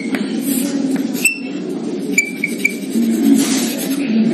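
Chalk on a blackboard: scratchy drawing strokes and taps, with short high squeaks of the chalk, one near the start, one just past a second and three in quick succession a little after two seconds.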